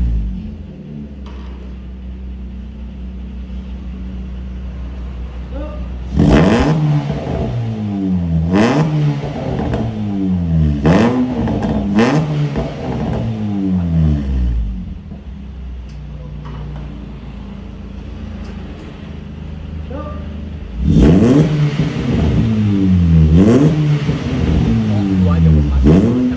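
Honda Mobilio's 1.5-litre i-VTEC four-cylinder engine idling and then revved in repeated blips, heard through a racing muffler held to the tailpipe to try its sound. There are two bouts of revving, one starting about six seconds in and one near the end, each rising and falling in pitch several times, with steady idle between them.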